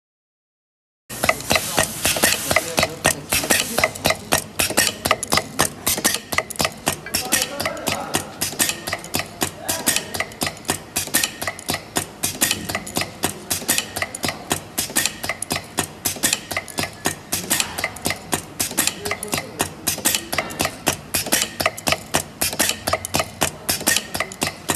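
Pneumatic valve-pressing machine cycling rapidly, a fast run of sharp mechanical clacks several times a second that starts about a second in, as its air cylinder presses plastic valve parts fed down the chute.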